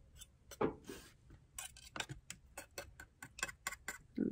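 A metal spoon clinking and scraping inside a small tin can of sauce: a run of light, irregular clicks that come faster in the second half.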